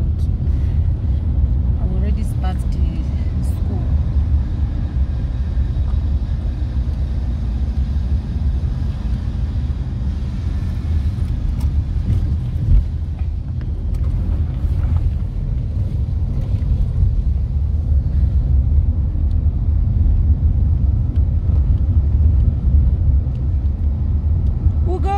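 Steady low rumble of engine and road noise inside a moving car's cabin, with one brief bump about halfway through.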